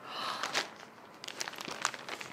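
White packaging wrapping crinkling and rustling as it is pulled from a box. It starts with a swell of rustling in the first half-second or so, then gives way to scattered small crinkles and clicks.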